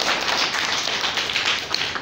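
Audience of schoolchildren and seated guests applauding: many hands clapping at once in a dense, even patter.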